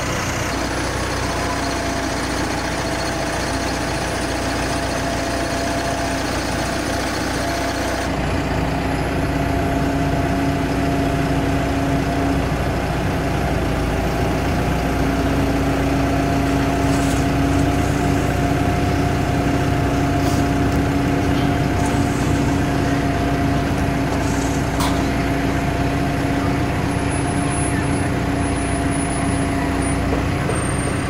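Telehandler's diesel engine running steadily, a constant humming tone over a low rumble. The sound shifts slightly about eight seconds in.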